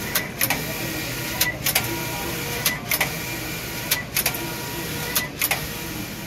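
Tongxing TX280TI 18G computerised flat knitting machine running, its carriage working the needle bed with a steady mechanical hiss. A short cluster of sharp clicks comes about every one and a quarter seconds.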